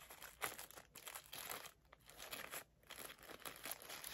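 Quiet crinkling and rustling of small white packaging handled and unwrapped, in short irregular bursts.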